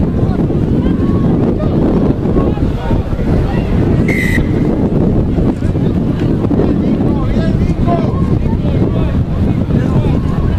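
Wind buffeting the microphone, with faint shouts from players on the field and one short, shrill referee's whistle blast about four seconds in.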